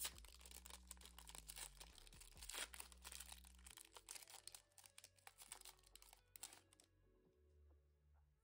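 Foil wrapper of a Pokémon card booster pack being torn open and crinkled by hand as the cards are pulled out, a dense run of crackles that dies away about seven seconds in.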